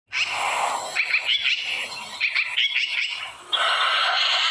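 Birds chirping, with quick rising and falling chirps repeated from about one to three seconds in. About three and a half seconds in, a louder, steady sound made of many held tones cuts in abruptly.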